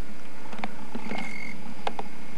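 Steady hiss of camcorder background noise with a few faint clicks, about a second in and near the end, and a brief thin high tone in between.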